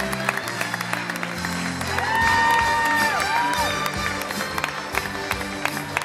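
Theatre orchestra playing under audience applause, with scattered claps throughout. About two seconds in, a long high-pitched cheer from the audience is held and falls away, followed by a shorter one.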